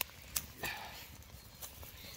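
Metal tongs clicking against corn cobs and embers while turning corn on the cob in a wood fire: three sharp clicks in the first second, then quieter.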